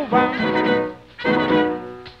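Instrumental passage of a 1934 Cuban rumba recording, with no singing: the band plays two long held notes of about a second each.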